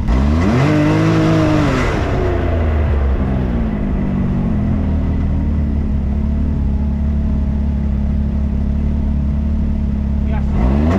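A 1000cc UTV engine revving up as the machine pulls away in gear about half a second in, easing back after about two seconds, then running steadily as it drives along the trail.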